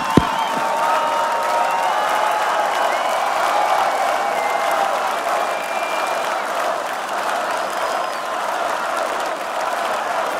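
Large festival crowd cheering and applauding, with scattered shouts and whistles over the clapping. A single low thump sounds right at the start.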